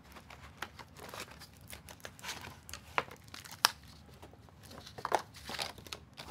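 Slotted cardboard insert pieces being handled and laid down in a board-game box: light scraping and rustling of card with a few sharp taps, the loudest about three and a half seconds in.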